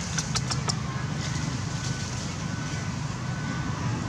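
Steady low engine rumble, like a motor vehicle running, under a quick run of four or five dry crackles in the first second as a macaque's hand rakes through dry leaf litter.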